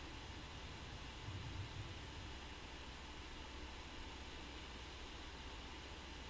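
Faint room tone: a steady background hiss with a low hum, and a brief faint low sound about a second in.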